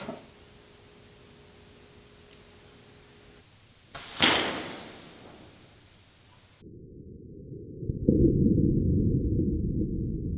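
A straw dart blown through a long pipe hitting a hanging sheet of newspaper: one sharp hit about four seconds in that dies away over a second. It is followed by a deep, muffled rumble of slowed-down audio that grows loud near the end.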